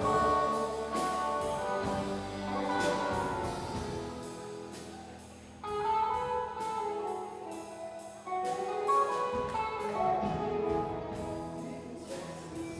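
Live band playing an instrumental passage on keyboard, guitars and drum kit, with steady cymbal strokes. The music thins out and gets quieter, then the full band comes back in louder about six seconds in.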